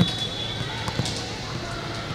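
Steady background noise of an indoor volleyball arena during a pause between rallies, with a few light knocks, the clearest about a second in.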